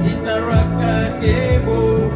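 A group of singers performing a song over amplified backing music with a bass line and low drum beats.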